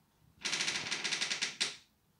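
Fingers rubbing and ruffling short cropped hair close to a phone's microphone: a fast run of scratchy rustles, about ten a second, lasting about a second and a half.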